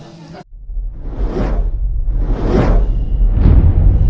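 Cinematic logo-sting sound design: three whooshes about a second apart over a deep rumble that starts about half a second in and builds louder.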